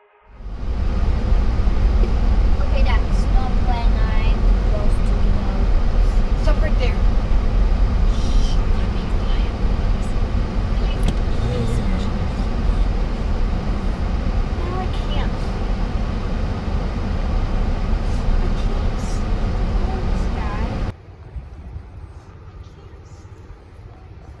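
Loud, steady low rumble of a car in motion as heard inside the cabin, with faint muffled voices. It cuts off abruptly about 21 seconds in, giving way to much quieter outdoor sound.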